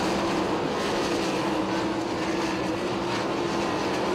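410 sprint cars' engines running at speed around the dirt oval, a steady drone with little change in pitch.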